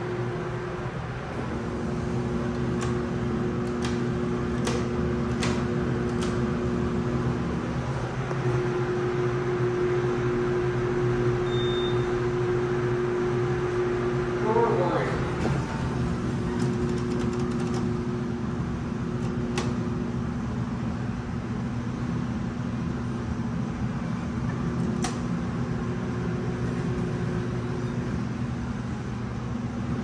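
Steady mechanical hum inside a TKE traction service elevator car, with several low held tones that fade in and out. There are a few faint clicks and one short high beep about ten seconds in.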